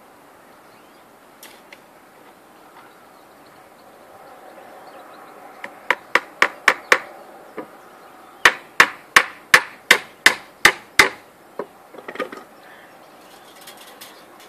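Hammer blows on timber in two quick runs: five strikes, a lone strike, then about nine more, roughly three to four a second.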